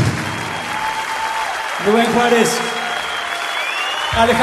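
Audience applauding, with a man's voice speaking over the applause from about two seconds in.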